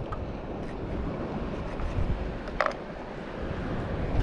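Wind noise on the microphone over steady surf, with one short sharp sound about two and a half seconds in.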